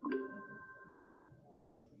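A short electronic chime: two steady tones that start together and fade out over about a second.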